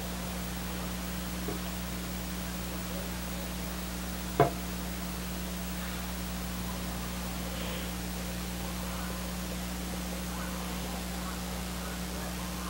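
Steady low electrical hum under an even hiss, the background noise of an old broadcast recording. A single sharp click about four seconds in, and faint distant voices later on.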